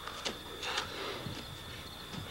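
Faint scuffing and a soft knock as two wrestlers grapple and one hoists the other onto his shoulders on a vinyl-covered mattress, over a steady faint high-pitched tone.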